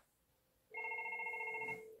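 FortiFone 475 IP desk phone ringing for an incoming call: one electronic ring of several tones sounded together with a fast flutter, starting under a second in and lasting about a second.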